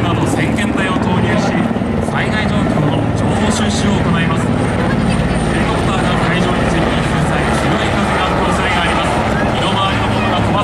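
Fire department rescue helicopters flying low overhead: steady rotor and turbine engine noise. A large twin-engine Super Puma-type helicopter passes close by.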